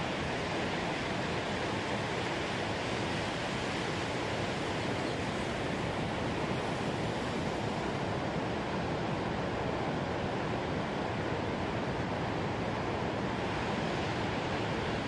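Ocean surf: a steady, unbroken wash of breaking waves with no single crash standing out.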